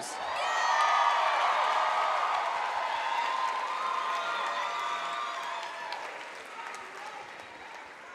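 Live audience applauding and cheering as a performer walks on. It swells about a second in, then slowly dies away.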